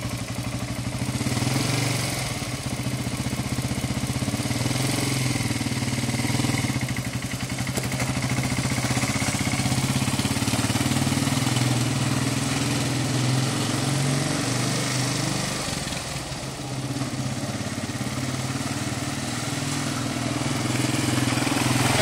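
Suzuki LTZ400 quad bike's single-cylinder four-stroke engine running at low, fairly even revs, with small rises and dips, as the quad pulls away and rolls slowly in a low gear.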